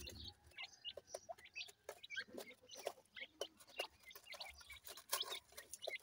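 Young grey francolin and pheasant chicks pecking at soil in a hand and on the ground: many faint, quick, irregular taps, mixed with short soft high chirps.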